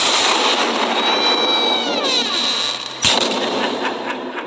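A dense rushing noise with a falling whistle-like glide, then a sudden loud bang about three seconds in, fading away afterwards.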